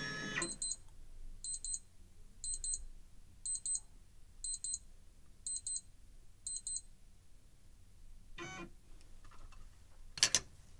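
Electronic alert beeping from a lab scanning tablet: high double beeps, seven pairs at about one per second, signalling that the scan has found an organism. A single short electronic tone follows near the end.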